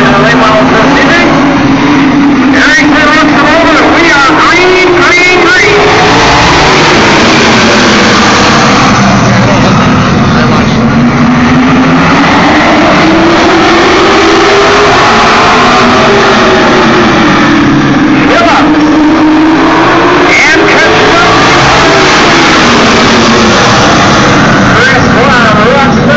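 A pack of late model stock cars racing on a paved oval, the engines loud and steady. Their pitch rises and falls in slow waves about every ten seconds as the cars lap.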